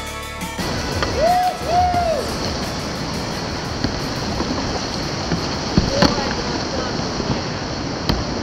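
Background music cuts off about half a second in, giving way to the steady rush of whitewater rapids around the kayak. Two short rising-and-falling shouts come soon after, and another brief voice sounds near the six-second mark.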